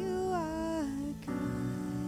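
Worship music: a woman sings one long wordless note that slides down in pitch over sustained keyboard chords. The chord changes a little past one second in.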